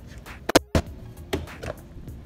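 Sharp plastic clicks, a quick pair about half a second in and more soon after, as the snap latches on a Husky clear plastic parts organizer are undone and its lid is opened.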